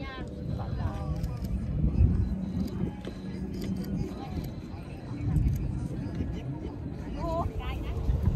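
Voices talking in the background over a constant low rumble.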